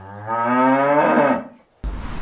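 A lamb bleating: one long call about a second long that fades away.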